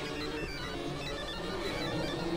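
Experimental synthesizer music: several layers of steady tones and drones sounding at once, from a few recordings mixed together, with short high notes that step in pitch over a dense low hum.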